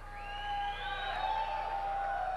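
Audience whistling in response to a greeting from the stage: one long whistle held at a steady pitch, with others gliding up and then falling away above it, over faint crowd noise.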